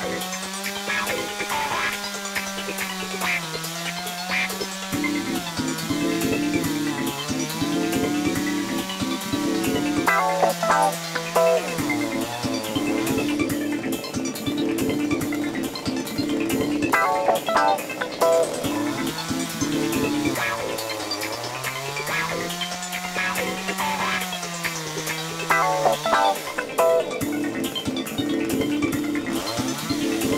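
Background music with a steady beat and a gliding melodic line over a pulsing chord.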